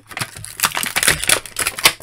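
Thin clear plastic blister packaging crackling and crinkling as an action figure is worked free of it: a quick run of sharp clicks and crackles, loudest just before the end.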